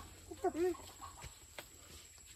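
A short, faint call about half a second in, followed by a couple of light clicks.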